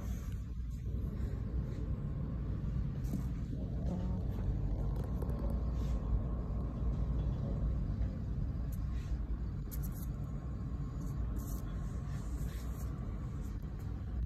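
A low, steady background rumble with a few faint, scattered clicks.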